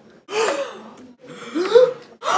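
Young people gasping in shock: two voiced gasps about a second apart, the second louder and rising in pitch.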